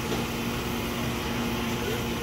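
Steady low mechanical hum of large-store machinery running, with a constant low tone under it.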